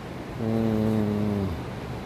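A man's voice holding a steady, low hummed 'mmm' for about a second, a held pause filler.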